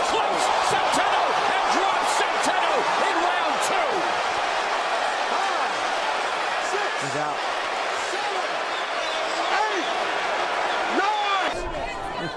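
Boxing arena crowd cheering and shouting after a knockdown: a dense, loud din of many voices, with a few sharp knocks in the first seconds. The din eases a little later on.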